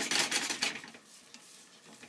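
Beaten eggs being stirred quickly in a frying pan with a utensil, rapid scraping strokes against the pan that die away about two-thirds of a second in, leaving only faint small ticks.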